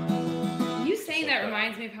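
An acoustic guitar chord rings out and fades over the first second, then a voice starts talking.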